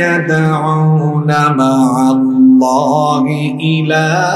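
A man recites a Qur'anic verse in a melodic chant, holding long notes that waver in pitch and changing note about once a second.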